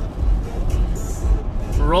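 Cabin noise inside a Chevrolet Tahoe cruising on the highway at about 70 mph: a steady low rumble of engine and road, with tyre hiss over it.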